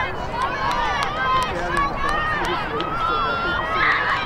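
Girls' voices calling and shouting across an open lacrosse field, several at once and high-pitched, with a few sharp clicks among them.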